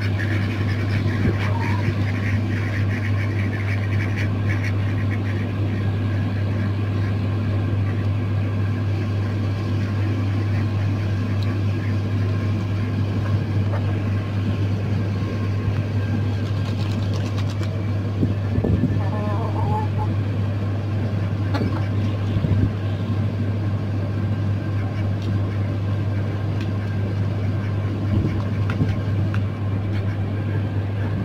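A steady low mechanical hum runs unbroken throughout. A few brief calls from the poultry, ducks and chickens, come over it, one near the start and one about two-thirds of the way in.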